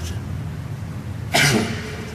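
A single short cough about a second and a half in, over the steady low hum of the sermon recording.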